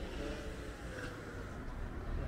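Quiet street ambience with a steady low rumble of distant traffic.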